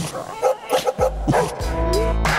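Small dog barking several short times over background music; the music takes over with sustained notes near the end.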